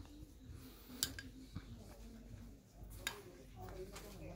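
Faint people's voices talking, with two sharp clicks, one about a second in and one near three seconds.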